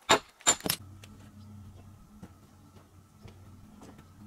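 A hammer strikes stone three times in quick succession, sharp ringing clicks, dressing a rock for a dry-stone wall; the strikes stop after about a second. A faint steady low hum follows, with a few light knocks of stone.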